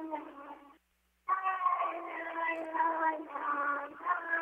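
A high-pitched, drawn-out vocal sound heard over a telephone line answering the call: one short held note, then about a second in a longer wavering one. The callers first take it for an answering machine.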